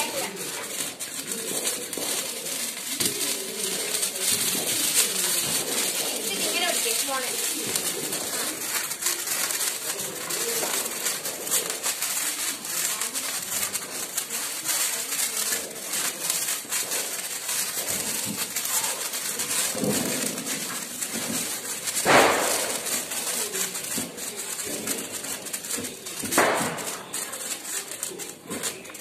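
Hand-held sparklers burning with a dense, high-pitched fizzing crackle, with voices in the background and two brief louder sounds near the end.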